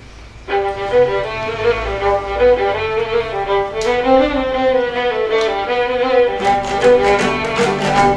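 A Moldavian folk tune played on fiddle starts about half a second in, accompanied by two plucked lutes. Near the end the lutes' strummed rhythm comes in strongly, with deeper bass notes.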